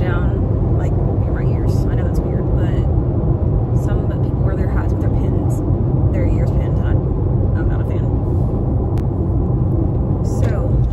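Steady low road and engine rumble inside a moving car's cabin, with a faint voice heard now and then over it.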